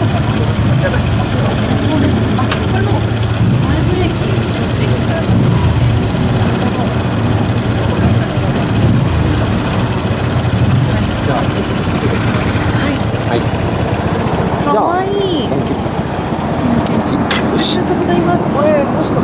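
A steady engine hum, like a motor idling at constant speed, with faint voices mixed in; the hum drops away about fifteen seconds in.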